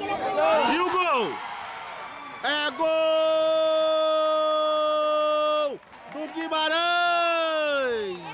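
A man's long drawn-out goal shout, held on one steady pitch for about three seconds, then a second shorter one that falls away in pitch at the end, after about a second of excited talk: a commentator calling a goal.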